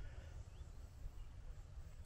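Quiet open-air ambience: a faint low rumble with a few faint, short chirps of distant birds.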